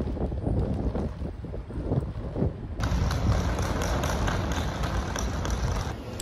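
Outdoor city street ambience: wind buffeting the microphone over traffic noise. About three seconds in, it changes to a brighter, steadier street hiss.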